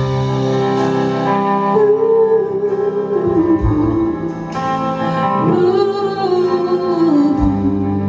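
Live rock band in concert with a female lead singer holding two long, wavering sung notes over the band, including electric bass.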